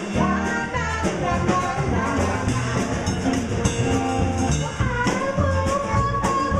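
Live band playing an upbeat song on two acoustic guitars and a drum kit, with a steady beat. The full band comes in right at the start after a spoken break.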